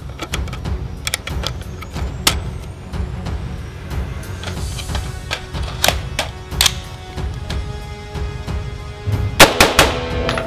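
Background music with a beat, and near the end a quick run of loud AR-15 rifle shots, the loudest sound here.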